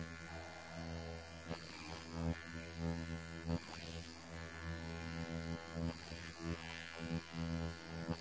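Ultrasonic skin scrubber running with a steady low electric hum while its metal blade is drawn over the skin, with faint irregular scraping touches.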